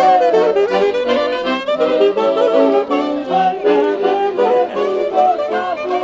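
Saxophone playing a quick, ornamented melody over accompanying instruments.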